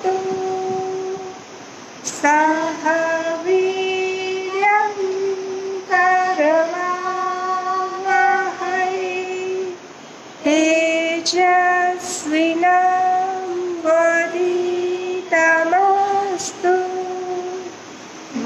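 A woman singing an opening prayer solo, in long held notes that slide between pitches, in phrases with short breaths about two seconds in and about ten seconds in.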